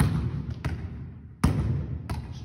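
Volleyball being forearm-passed against a gym wall: three sharp smacks in two seconds as the ball meets the forearms and rebounds off the wall, each trailed by the echo of the hall.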